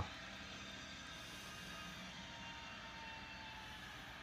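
Faint, steady background noise with no events in it, and a faint thin tone from about a second in for about two seconds.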